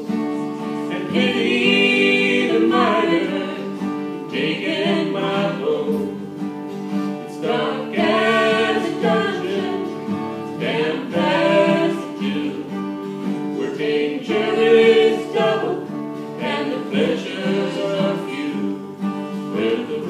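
A man and a woman singing a slow folk song together to strummed acoustic guitar accompaniment.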